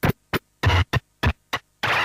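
Hardtek live-set music from a Korg Electribe MX and Kaoss Pad Quad, chopped into short bursts of distorted noise, some with a heavy low thump. Each burst cuts off abruptly into silence, about six in two seconds, in an uneven stuttering, glitchy rhythm.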